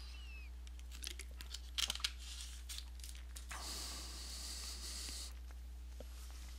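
A steady low electrical hum under a few faint clicks, then a soft rustling noise lasting nearly two seconds.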